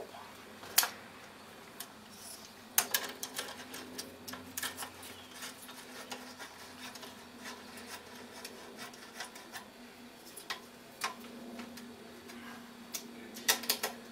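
Hand tool winding bolts into an alternator's casing: irregular light metal clicks and ticks, with a few sharper clicks.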